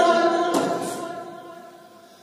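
A man singing a manqabat (Sufi devotional poem) unaccompanied, a held line trailing off and fading away over about two seconds into a short pause.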